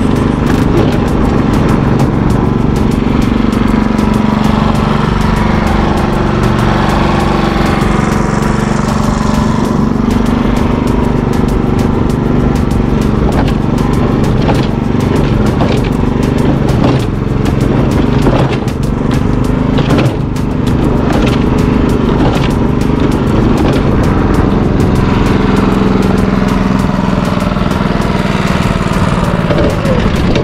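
Mortar mixer driven by a small gasoline engine, running steadily while it mixes, with frequent irregular clicks and knocks.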